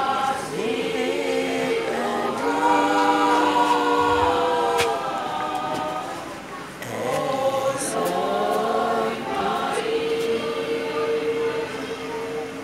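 A choir singing, many voices holding long notes together in two phrases, with a short break about six to seven seconds in.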